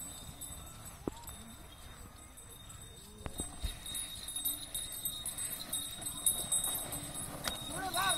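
Hooves of a yoked pair of bulls beating on a dirt track as they drag a stone block, growing louder as they come closer, with a few short shouts from the men running alongside.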